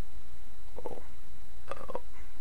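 Steady low electrical hum in the recording, with two brief faint sounds over it, one about a second in and one near the end.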